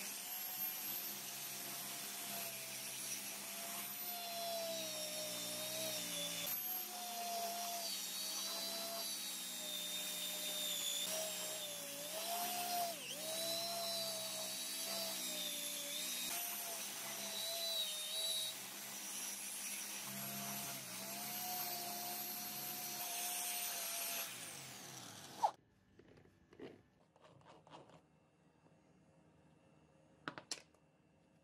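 Electric hand drill running steadily, spinning a metal lighter body in its chuck while it is sanded and polished by hand, its pitch wavering and dipping as the hand presses on. It winds down and stops about 25 seconds in, with a sharp click as it stops.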